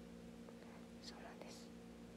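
Near silence: steady low room hum, with two faint breathy whisper-like sounds about a second in.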